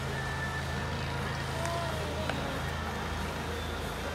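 Open-air stadium ambience: a steady low hum under a noise haze, with faint distant voices and a single faint click about two seconds in.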